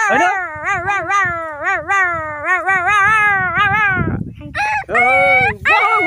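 A person imitating a dog howling: a long, wavering, yelping vocal howl, then a short break about four seconds in and a few shorter howls.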